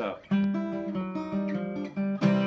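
Acoustic guitar fingerpicked: about a third of a second in, notes are plucked one after another and ring on together as a chord.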